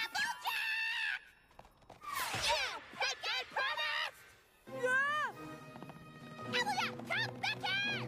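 Cartoon character voices crying out in short, high-pitched spells over background music, with a loud shout that falls in pitch about five seconds in.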